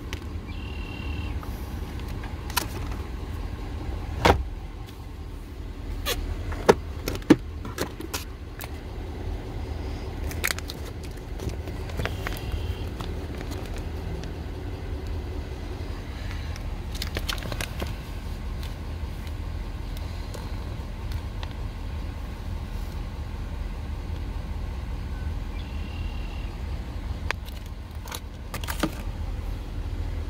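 Ford F-250's 6.7-liter Power Stroke diesel V8 idling as a steady low rumble heard inside the cab, with scattered clicks and knocks from handling things in the cabin.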